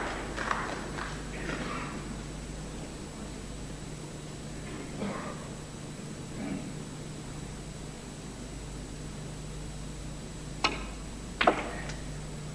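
Quiet hall ambience with a low hum and faint murmurs, then near the end two sharp clicks of snooker balls on the table, under a second apart, the second the louder.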